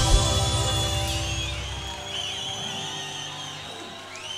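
A forró band's song ending: the drumbeat stops at the start and the last chord rings on and fades away. High, wavering whistles from the audience come in over it about a second in.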